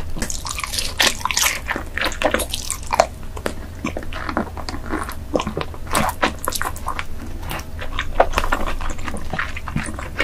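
Close-miked wet chewing of king crab leg meat, with a dense irregular run of small wet clicks and crackles from the mouth.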